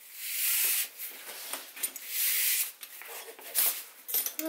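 A brand-new fabric bag strap being worked and pulled through its buckle by hand. It makes several bursts of rubbing and rustling, each under a second long.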